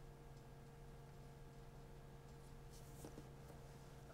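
Faint scratching of a graphite pencil drawing on paper, a little more distinct in the second half, over a steady low hum.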